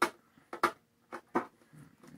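Tape being picked and peeled off a metal cookie tin: about five short, sharp rips in quick succession.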